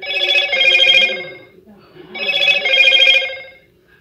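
A telephone ringtone ringing twice, each trilling ring about a second and a half long.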